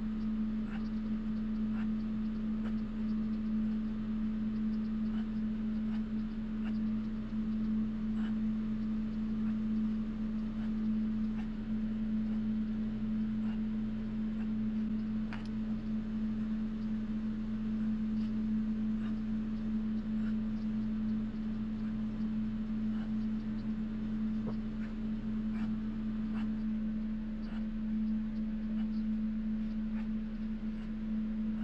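A steady low hum, with faint, scattered small clicks and scrapes of a sculpting tool working oil-based modelling clay.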